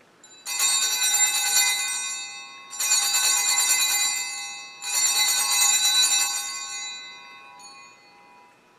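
Altar bells (sanctus bells) rung three times as the priest elevates the consecrated host, signalling the elevation. Each ring is a bright jangle of several small bells that fades away over about two seconds.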